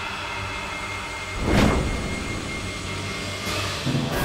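Dramatic TV-serial background score: a sustained low drone with held tones, broken about a second and a half in by a sudden loud swelling hit, with another hit building near the end.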